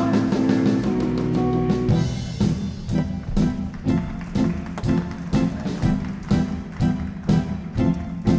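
Live band instrumental passage: held guitar and bass chords, then a drum beat comes in about two and a half seconds in, at roughly two strikes a second.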